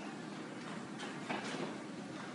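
Trainers scuffing and landing on a rubber gym floor during a quick sidestepping and running agility drill, with a few sharper footfalls about halfway through over steady room noise.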